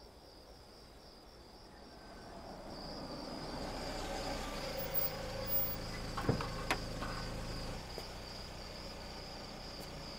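Crickets chirping in a steady, fast pulsing trill. Under it a car's engine rumble swells as it pulls up and drops away about eight seconds in, with two sharp clicks a little after six seconds.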